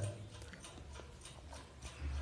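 A quiet pause: faint low room hum with a few light ticks scattered through it.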